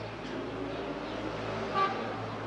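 Street traffic with a car running, and one short car-horn toot near the end.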